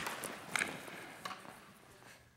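Lacrosse sticks clacking and players' footsteps on indoor turf during a pick-and-roll defense drill: a few sharp knocks in the first second and a half, then the sound fades away near the end.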